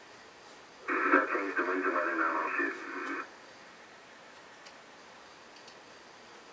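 A radio voice transmission, narrow and tinny, speaking for about two seconds starting about a second in, heard from the NASA broadcast playing on a screen in a room. Then only a faint steady hiss.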